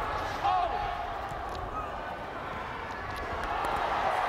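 Rugby match sound from the pitch: a steady stadium crowd murmur, with a few short shouts from players about half a second in and faint thuds of contact at the ruck.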